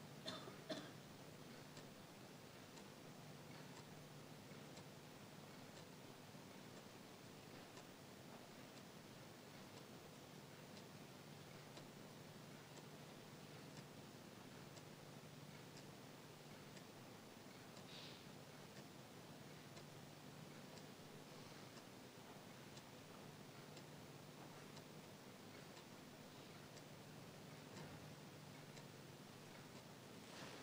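Near silence: the room tone of a large chamber with a faint steady low hum. A couple of small clicks come just after the start.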